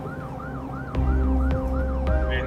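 Emergency vehicle siren in a fast yelp, its pitch sweeping up and down about three times a second, over a steady low drone, with a deep thump about a second in.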